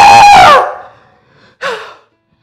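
A man's loud, drawn-out yell of joy, loud enough to clip, ending about half a second in, followed by a shorter cry near the end.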